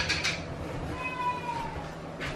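A cat meows once about a second in, a short call that falls slightly in pitch. At the very start there is a knock as something is set down on the counter.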